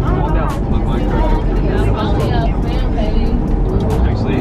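Cabin noise inside a moving charter coach: a steady low rumble of engine and road, with passengers chatting and a laugh near the start.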